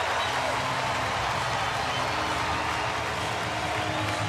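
Ballpark crowd cheering and clapping at a steady level after a run scores, with a faint steady low hum underneath.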